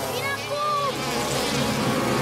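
Cartoon sound effect of a swarm of bees buzzing, thickening into a dense, steady buzz after about a second. A few short pitched, voice-like calls are heard near the start.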